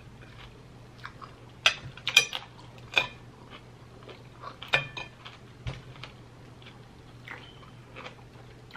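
A person chewing crisp raw cucumber slices close to the microphone, with scattered crunches and a few sharp clicks of wooden chopsticks against a glass plate, over a low steady hum.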